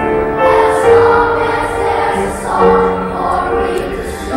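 Children's choir singing in parts, holding long notes that step from pitch to pitch.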